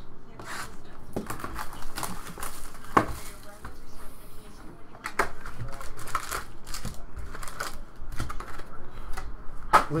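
Cardboard hobby box being opened and its foil-wrapped trading card packs pulled out and set down on a table: irregular crinkles of foil, light taps and clicks of handling.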